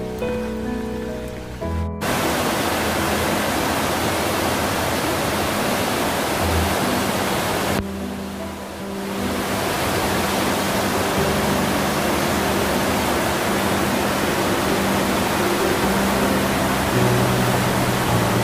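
Soft background music, then from about two seconds in a loud, steady rush of water from a stream swollen by monsoon rain and running in spate. The rush dips briefly near the middle, then comes back as loud. The music carries on underneath.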